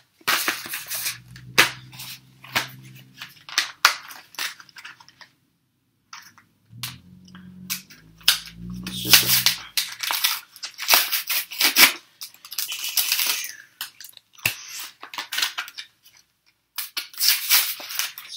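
Foil Yu-Gi-Oh booster pack wrappers crinkling and crackling in irregular bursts as the packs are handled, with a brief silence about six seconds in.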